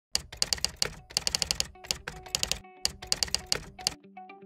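Typewriter keys striking in quick, irregular runs of clicks, as a caption types out letter by letter. Faint musical notes come in underneath about halfway through.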